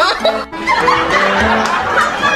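Laughter over light background music, starting about half a second in.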